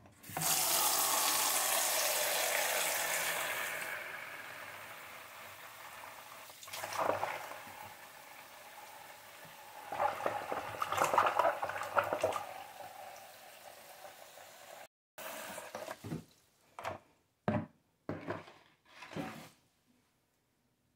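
Bathroom tap running into a metal washtub set in the sink, loud at first and settling lower as the water deepens, with a hand stirring the water to test it about ten seconds in. Near the end come a few short knocks and splashes.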